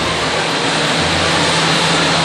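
Steady background noise of a public address in a crowded event space, an even hiss with a low hum underneath, while no one speaks.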